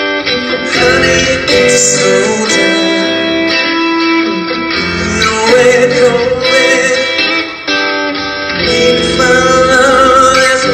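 Electric guitar played live through a Headrush pedalboard running direct, a lead line with long held notes over a looped backing part.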